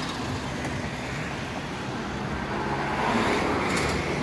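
Diesel engine of a 2015 VW Crafter van idling with a steady low hum, with some street traffic noise that swells slightly about three seconds in.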